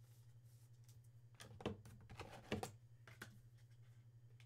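Clear plastic top loader and trading card being handled by hand, giving a short cluster of light plastic clicks and rustles in the middle, the two sharpest about a second apart, over a steady low hum.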